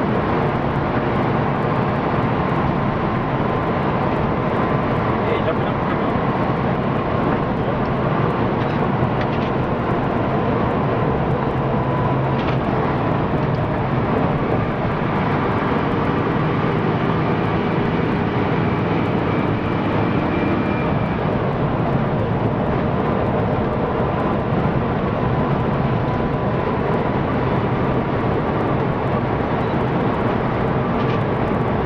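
Bus engine and road noise heard from inside the cabin: a steady drone as the bus drives along at an even speed.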